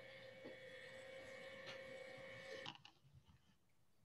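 Near silence: faint steady room tone and hum from an open call microphone, which cuts off abruptly to dead silence about two-thirds of the way through.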